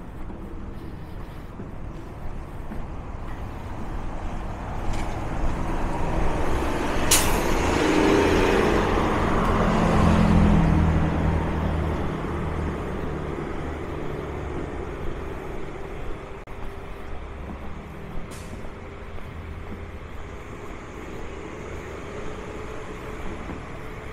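A heavy diesel vehicle passes close by. Its engine rumble builds to a peak about eight to eleven seconds in and then fades, with a short sharp hiss of air brakes about seven seconds in. Steady street traffic runs underneath.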